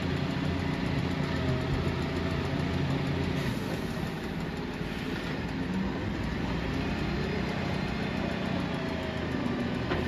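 Volvo side-loader garbage truck's engine running as the truck drives slowly round a bend, a steady low hum whose note changes about three and a half seconds in.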